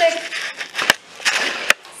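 Camera handling noise as the camera is moved: rustling, with two sharp clicks, one about a second in and one near the end.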